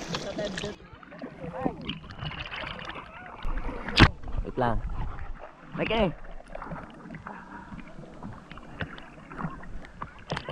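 Sea water sloshing and splashing around a camera held at the surface, with one sharp knock about four seconds in and a few short calls from a swimmer.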